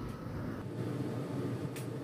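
Quiet kitchen room tone: a faint steady hiss with no distinct event.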